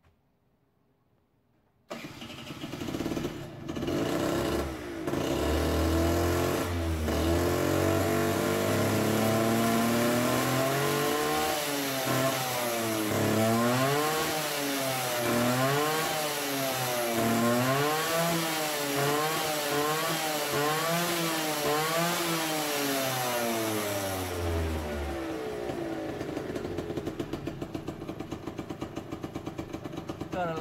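Small two-stroke scooter engine started through its new, very long homemade welded exhaust. It catches about two seconds in with a few sputters, runs, then is revved up and down over and over, about once every second and a half, before settling back to an even idle near the end.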